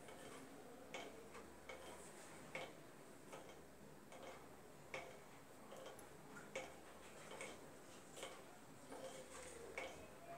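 Near silence with faint, regular ticking, a little faster than one tick a second, alternating stronger and weaker, over a faint steady low hum.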